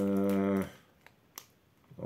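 A man's voice holding a drawn-out, level hesitation sound (a long "ööö") for about a second, then a single sharp click from the plastic snack packet in his hands about a second later.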